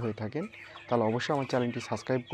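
A flock of broiler chickens clucking, a string of short calls one after another.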